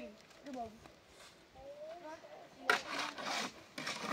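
A shovel scraping through cement mortar in a metal wheelbarrow: one rough scrape lasting under a second, about two-thirds of the way in, and another just starting at the end. Brief voices come before it.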